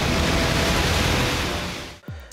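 Sea waves crashing and surging over a concrete breakwater, a loud, even rush that fades out near the end. Faint music tones linger underneath.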